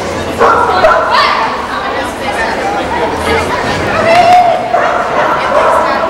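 A bearded collie barking repeatedly as it runs an agility course, over a background of people's voices.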